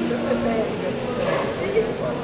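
Several people's voices overlapping, some drawn out and sliding in pitch, from mourners gathered around an open casket.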